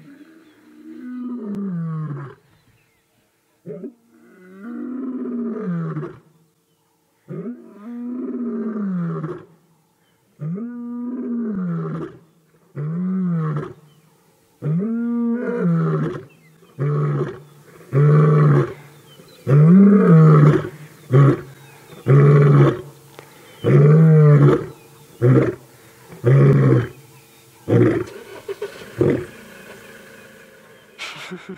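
Adult male lion roaring: about six long, deep moaning roars that fall in pitch, then a louder run of short grunting roars at roughly one a second.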